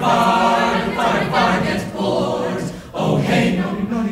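Mixed-voice chamber choir singing a cappella in English madrigal style, in short phrases with a brief breath break a little before three seconds in.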